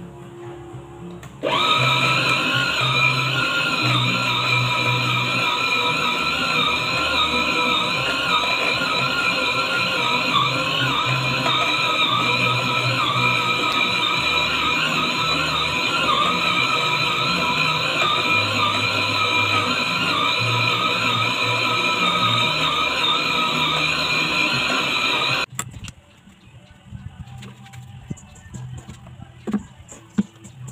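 An inexpensive stand mixer's motor running steadily with a high whine as its dough hook kneads bread dough. It switches on about a second and a half in and cuts off a couple of seconds before the end.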